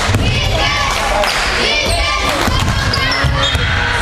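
A basketball bouncing on a gym floor during play, a string of short thuds, with voices in the hall.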